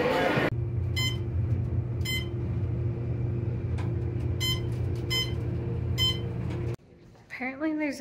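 Inside a moving elevator car: a steady low hum with a handful of short electronic beeps at uneven intervals, about a second apart at first. It follows half a second of busy lobby noise, and the hum cuts off abruptly near the end.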